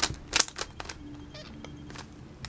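Stickerless plastic 3x3 Rubik's cube being turned quickly by hand: a run of sharp clicks as its layers snap round, about five in the first second, then fainter.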